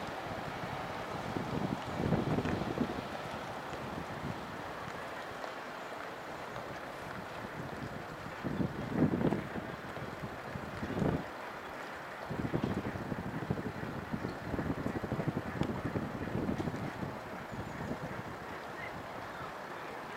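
Wind buffeting the microphone in several gusts over a steady outdoor background noise.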